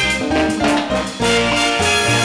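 Live cumbia orchestra playing an instrumental passage with no singing.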